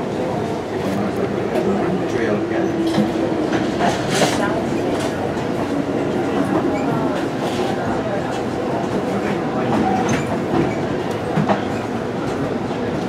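Amtrak Coast Starlight passenger train rolling along the track, heard from on board: a steady rumble with scattered clicks and rattles from the wheels and car.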